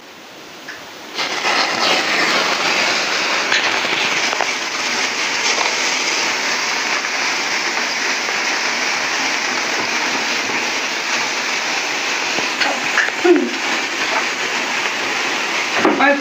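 Hand-held sparklers burning, a steady crackling hiss that starts about a second in and holds evenly throughout.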